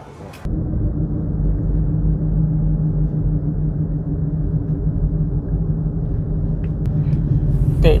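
A car driving along a city street: a steady low rumble of road and engine noise that starts suddenly about half a second in, with a faint hum under it.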